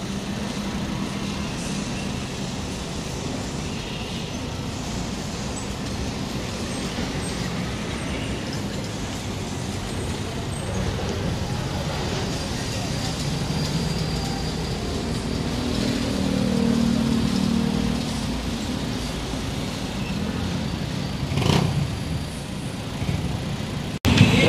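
Steady traffic noise from cars and motorcycles passing on a busy city road. One vehicle passes louder about two-thirds of the way in, and there is a short, sharp sound a few seconds before the end.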